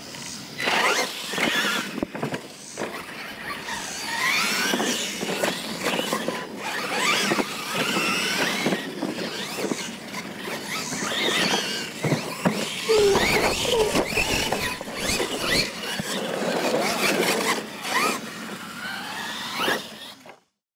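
Two Losi LMT radio-controlled monster trucks racing on dirt, their brushless electric motors and gear drivetrains whining up and down in pitch with the throttle over and over, with knocks from jumps and tyres churning the dirt.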